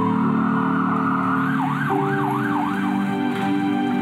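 Ambulance siren over soft background music: a held tone, then a fast up-and-down yelp, about three cycles a second, for about a second before it fades.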